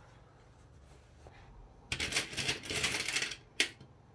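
A rattling clatter of small plastic sewing clips being handled, about a second and a half long, starting halfway through. It is followed by one sharp click as a clip snaps onto the fabric edge.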